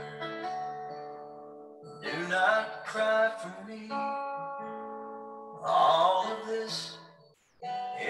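A slow song on acoustic guitar: strummed chords that ring on between strokes, with fresh strums about two, three and six seconds in, and a brief drop-out shortly before the end.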